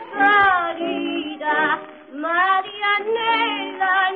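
A woman singing a comic tango with a tango orchestra, on an old recording with a dull top end. Her drawn-out vocal phrases slide up and down in pitch over the accompaniment.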